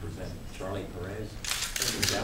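A quick run of still-camera shutter clicks about one and a half seconds in, over low murmured voices.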